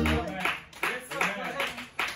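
Rhythmic hand clapping, about three claps a second, with voices under it.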